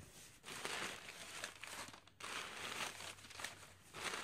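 Crumpled brown packing paper crinkling as it is pulled out of a cardboard box, in two long stretches with a short break about two seconds in.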